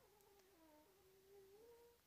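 Near silence, with a faint, wavering drawn-out tone.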